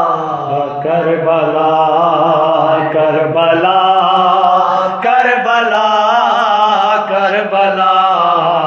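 Unaccompanied male voice chanting an Urdu noha, a Shia lament, in long, wavering melodic notes.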